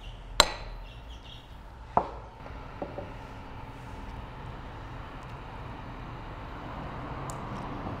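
Sharp knocks of serving utensils against the dishes, one loud one about half a second in and a softer one about a second and a half later, then a low steady background as the noodles are ladled.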